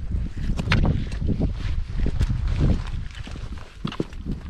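Footsteps on a rocky trail: boots scuffing and crunching on stone and grit, with several sharp clicks of trekking-pole tips striking rock, over a low, uneven wind rumble on the microphone.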